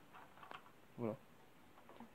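Mostly quiet, with a few faint light clicks from hands moving the linkage and parts of a stopped small Briggs & Stratton engine, and one short spoken word about a second in.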